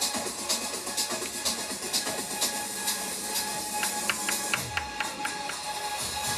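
Electronic dance music played from a DJ controller, with a steady beat of about two beats a second. About four seconds in comes a quick run of short clicks, followed by a falling bass sweep.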